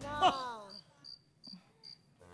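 Game-show thinking-time sound effect: a run of about five short, high-pitched electronic beeps, roughly two and a half a second, while the contestant works out her answer.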